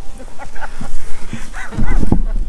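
A few short, dog-like barking yips, each rising and falling in pitch: one about half a second in and a louder pair near the end.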